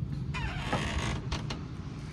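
A creak with a short falling squeal, then two sharp clicks, over a steady low hum.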